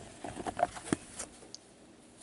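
A few soft clicks and rustles of cardboard cards being slid and shuffled in gloved hands.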